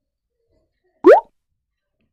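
A single short, loud rising 'bloop' sound effect about a second in, played at the change from one quiz slide to the next.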